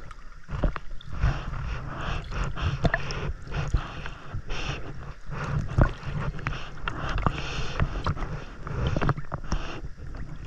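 Water sloshing and splashing against a camera held half-submerged at the surface, with irregular gurgles, slaps and bubbly clicks as the swimmer's legs kick behind it. A heavy low rumble comes from the waterline washing over the housing.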